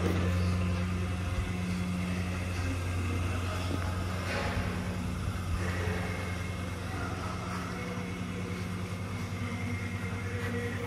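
A steady low hum that runs on unchanged, with a brief rustle about four seconds in.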